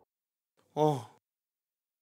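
A man's single short sighing "oh", falling in pitch, about a second in.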